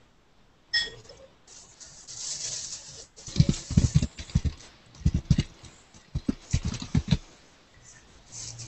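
A short electronic beep about a second in, then a hiss and a run of irregular thumps and scratches over a video-call line.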